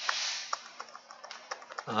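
A few scattered key clicks from a laptop keyboard being pressed while the slideshow is brought up, after a brief soft rustle at the start.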